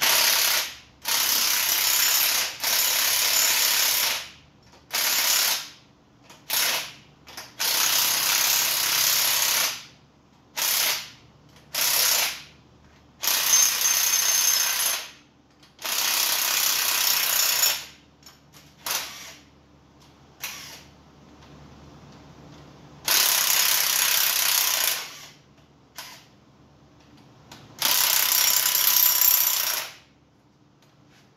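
Power ratchet running in short bursts, about a dozen on-off runs of varying length with pauses between, as the rocker arm nuts of an engine's cylinder head are spun loose.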